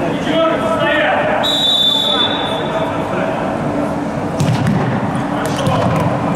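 Referee's whistle blown once, a single shrill note lasting about a second, starting about a second and a half in, over players' shouts in an echoing sports hall. Sharp thuds of the futsal ball being kicked come near the end.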